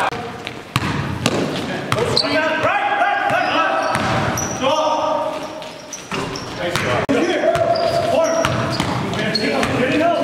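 Basketball game sounds in a reverberant gym: players' voices calling out, a basketball bouncing on the hardwood court with sharp knocks, and short high sneaker squeaks on the floor.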